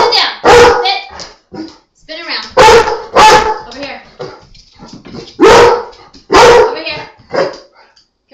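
Black Labrador barking excitedly: loud, sharp barks in pairs, about six in all, with a second or two between pairs.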